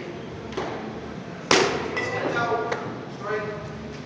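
A hard-pitched baseball smacks into a leather catcher's mitt once, about a second and a half in, with a short echo off the walls of a large indoor hall.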